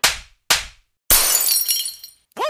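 Edited transition sound effects: two sharp hits half a second apart, then about a second in a longer shattering crash with a high, glassy ring that fades.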